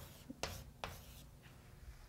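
Chalk writing on a chalkboard, faint: two sharp taps and short scratchy strokes in the first second or so.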